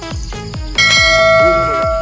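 A bell-chime notification sound effect rings out suddenly about a second in and holds its ringing tone. Under it runs background music with a steady beat of about three thumps a second.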